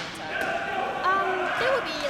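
Gymnasium game sounds in an echoing hall: short sneaker squeaks on the hardwood floor, about a second in and again near the end, over players' voices.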